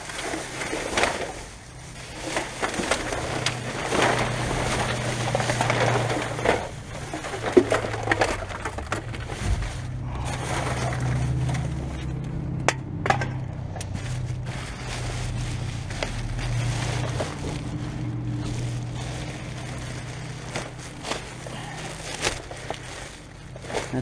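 Plastic rubbish bags rustling and crinkling as gloved hands pull and shift them through a full bin, with rubbish inside knocking about and a couple of sharp clicks near the middle. A steady low hum runs underneath.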